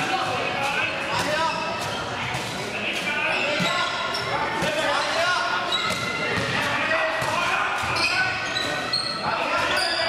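Indoor handball play in a large sports hall: the ball bouncing on the floor and being caught and passed, sneakers squeaking on the court, and players calling out, all with hall reverberation.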